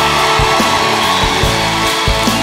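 Live stage-musical band playing an upbeat instrumental passage over a steady drum beat, about two strokes a second.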